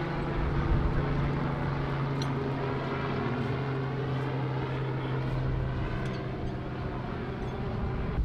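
A steady engine drone: a continuous low hum with several held tones and no change in pitch.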